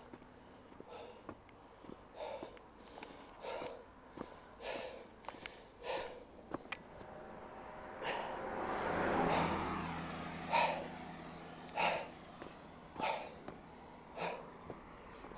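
A person breathing hard close to the microphone, with short noisy breaths about once a second. About eight seconds in, a low steady hum with a rushing noise swells up for a couple of seconds.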